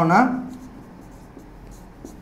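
A man's voice trails off in a drawn-out word at the start, then a marker pen scratches faintly across a whiteboard as it writes.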